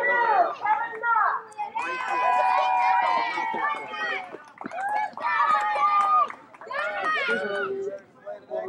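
Young children's high-pitched voices shouting and calling out together, some calls drawn out long, with no clear words.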